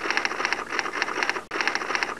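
Typing sound effect: a rapid run of keystroke clicks that breaks off about one and a half seconds in, then starts again.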